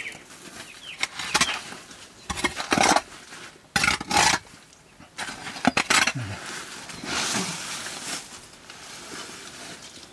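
A long-handled hand hoe scraping dung and leaf litter off a dirt cowshed floor. It comes as several irregular, noisy scraping strokes with rustling between them.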